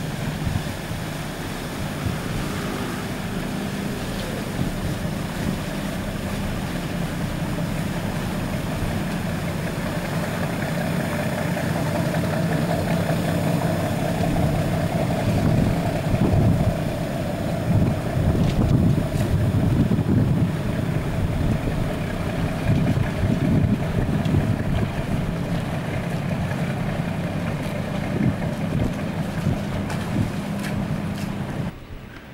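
Boat engines running steadily as boats motor past in the harbour, a low hum, with wind buffeting the microphone in gusts through the middle.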